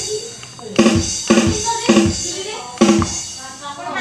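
Sampled kendang drum strokes ('tak' and 'dhes') from an arranger keyboard, set off by pressing a foot-switch pedal: four separate pitched drum hits, unevenly spaced.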